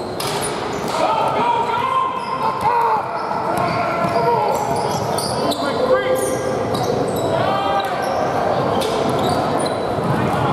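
Basketball game in an echoing gym: a ball bouncing on the hardwood court, with players and coaches shouting across the hall.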